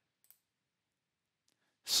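Near silence with two faint ticks, then a man's voice starts speaking just before the end.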